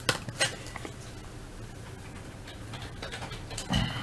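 Vintage trading cards and a soft plastic card sleeve being handled: two light clicks about half a second apart at the start, then faint rustling.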